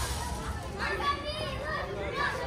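Children playing on a playground, several high voices calling and chattering over one another.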